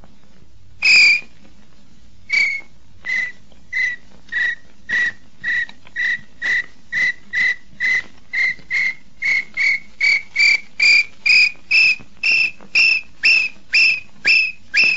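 A man whistling an imitation of a nambu (tinamou) song. It opens with one long note, then a long run of short clear notes that come faster and louder, dipping a little in pitch and then climbing toward the end.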